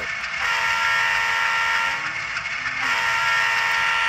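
Horn of a sound-equipped Bowser model GE U25B diesel locomotive playing through its onboard speaker. There are two blasts: the first lasts about a second and a half, and the second starts about halfway through and is held.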